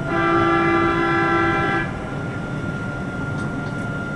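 Airport people-mover train's horn sounding once: a steady single-note blast of almost two seconds that cuts off sharply.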